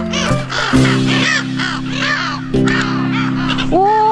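A flock of gulls giving repeated harsh calls over background music with steady low sustained chords.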